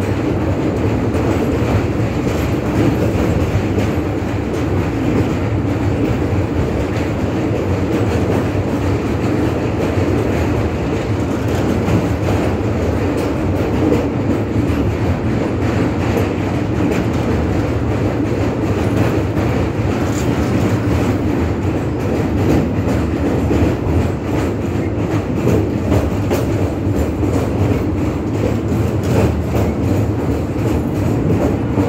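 Indian Railways passenger coach running steadily across a steel truss railway bridge, heard from an open coach window: a continuous, even-level noise of wheels on rails.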